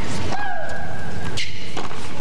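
Tennis ball struck by rackets during a baseline rally: sharp hits near the start and again about a second and a half in. About half a second in there is a short falling vocal cry from a player.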